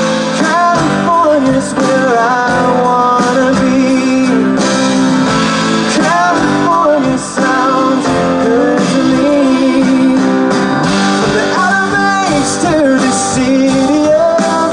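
Live band playing a song: female vocals over strummed acoustic guitar, electric guitar and drums.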